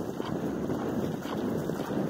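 Wind buffeting the microphone of a camera carried on a moving horse: a steady rushing rumble, strongest in the low end.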